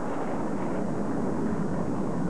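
Steady, even noise of jet aircraft engines in flight, with no change in pitch or level.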